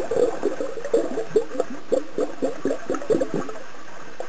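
Bubbling and water gurgling heard through an underwater microphone: a quick, irregular run of short bubbly pops over a steady underwater hiss, dying away about three and a half seconds in.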